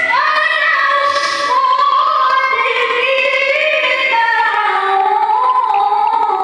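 A woman's melodic Qur'an recitation (tilawah) into a microphone: long held notes that glide slowly up and down in an ornamented, sung style.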